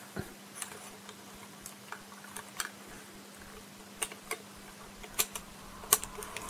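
Small hard plastic clicks and taps from the parts of an SD Gundam plastic model kit being handled, as its armour pieces are pulled off and pressed back onto the shoulders. The clicks come singly and irregularly, the sharpest one near the end.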